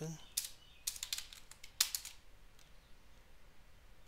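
Typing on a computer keyboard: a quick run of keystrokes in the first two seconds, the last one the loudest.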